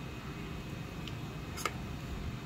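Small 3D-printed plastic chassis parts being handled, with one sharp click about one and a half seconds in and a fainter tick just before it, as the upper chassis piece is fitted onto the springs.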